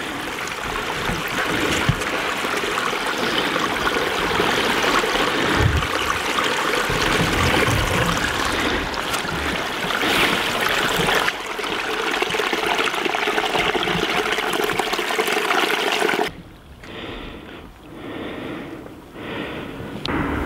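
A shallow stream running over stones in a narrow channel, heard close as a steady trickling rush; it drops away suddenly about four seconds before the end, leaving a quieter, uneven noise.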